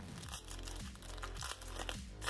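Wrapper of a 2021 Bowman baseball card pack being torn open and crinkled in the hands: a run of irregular crackles and rips. Quiet background music plays underneath.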